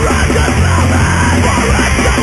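Hardcore punk recording: loud, dense distorted guitars, bass and drums with yelled vocals.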